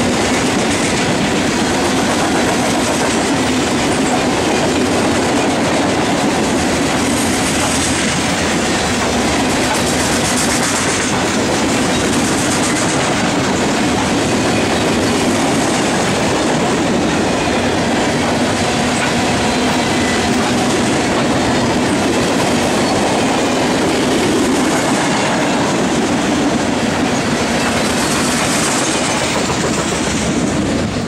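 Freight train's coal hopper cars rolling past, a loud, steady noise of steel wheels on the rails that begins to fade at the very end as the last car clears.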